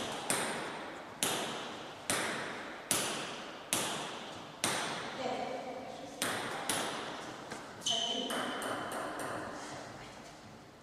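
Table tennis ball striking bats and table in a regular rhythm, about one sharp click a second, each ringing on in a large reverberant hall.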